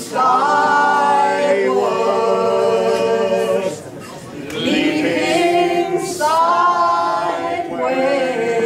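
A small mixed group of men and women singing a folk song unaccompanied in harmony, on long held notes. The sound drops briefly about four seconds in, at a break between phrases, then the next line starts.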